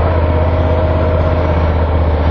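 Moto Guzzi V11 Sport's air-cooled 1064 cc V-twin engine running at steady revs while riding on a track, heard onboard.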